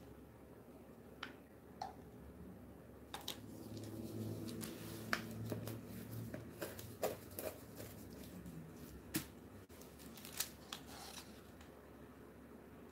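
Plastic mixing cups and a wooden stir stick clicking, tapping and scraping as epoxy resin and white tint are handled and mixed. A few sharp knocks at first, then busier, with faint rubbing under them.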